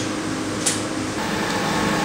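Steady hum and hiss of a plant room's running machinery and ventilation, with one faint click about a third of the way in.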